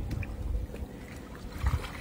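Pool water splashing and lapping as a child moves through it, over an uneven low rumble, cutting off suddenly at the end.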